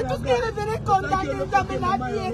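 Several people's voices, drawn out and wavering, inside a vehicle over a low steady rumble.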